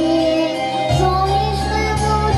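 A young girl singing live into a handheld microphone over a backing track, holding a long note before moving to a new one about a second in as the accompaniment's bass changes.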